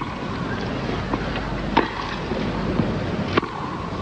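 Tennis ball struck by racquets back and forth in a grass-court rally: three sharp hits about a second and a half apart, over a steady background hiss.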